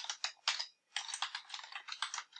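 Typing on a computer keyboard: a quick run of keystrokes, a short pause a little over half a second in, then another fast run of keystrokes.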